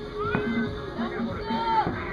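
Night-time street din: several short calls that rise and fall in pitch over a low repeating pulse like distant music, with a single sharp pop about a third of a second in.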